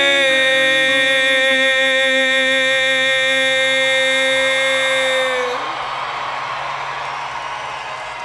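Live rock song: the male lead singer holds one long note with a slight wobble over a sustained band chord, cutting off about five and a half seconds in. The audience then cheers.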